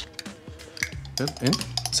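A metal spoon clinking and scraping against a small glass jar as tamarind paste is scooped out into a ceramic bowl, a handful of sharp clicks. Background music holds a steady note for about the first second.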